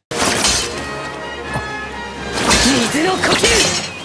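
Anime fight-scene soundtrack: dramatic music and a crashing, shattering sound effect cut in suddenly out of silence. About two and a half seconds in, a character's voice rises above the mix.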